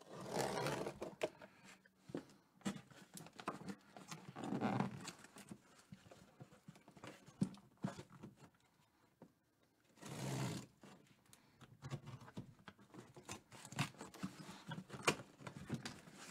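Packing tape being cut and peeled off a cardboard box: a few short tearing pulls, near the start, about four seconds in and about ten seconds in, among scattered small scrapes and taps of the blade and fingers on the cardboard.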